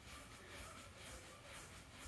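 Near silence: a faint rub of a folded microfibre towel gently buffing wax residue off car paint, swelling slightly a few times.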